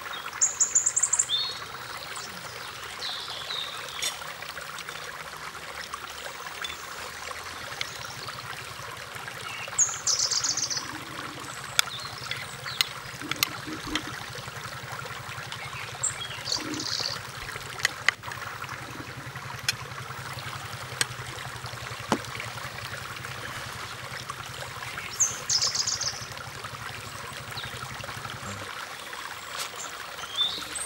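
Steady rush of running water, like a forest stream, with a bird giving short high chirping calls every several seconds and a few sharp clicks. A low steady hum runs underneath from about eight seconds in until near the end.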